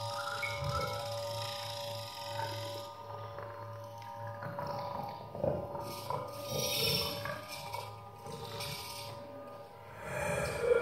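Contemporary electroacoustic music for flute, piano and tape: several held tones over a low drone that drops out about halfway, followed by airy, noisy bursts with a growling, animal-like quality.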